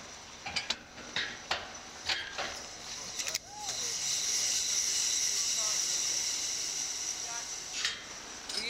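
Slingshot thrill ride being readied for launch: a few sharp metallic clicks and clunks early on, then a steady high hiss for about four seconds that cuts off suddenly near the end.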